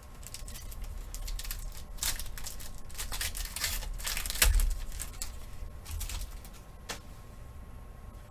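Trading cards being handled, dealt onto a pile and slid in and out of plastic sleeves and a rigid top loader: an irregular run of light clicks, scrapes and rustles of card and plastic, with a few dull bumps on the table, the loudest about four and a half seconds in.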